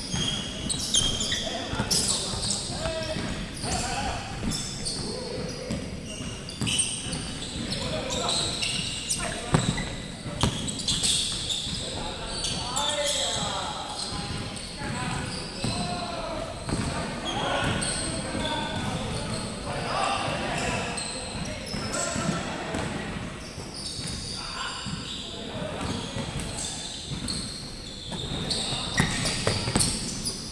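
Basketball game on a hardwood court: a ball bouncing repeatedly on the floor, sneakers squeaking, and players' voices calling out, all echoing in a large hall.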